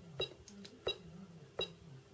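Three faint clicks, about two-thirds of a second apart, from the down-arrow key on a CM Count Pro counting machine's keypad being pressed to scroll through the menu.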